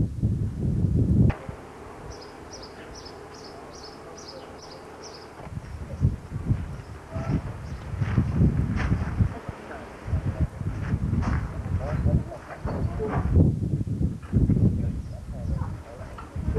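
Outdoor ambience of indistinct voices and low buffeting. A couple of seconds in, during a briefly quieter stretch, there is a quick run of about eight high chirps.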